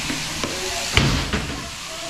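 Sheep-shearing handpiece running with a steady hiss as its comb and cutter clip through the fleece. A single sharp knock about a second in.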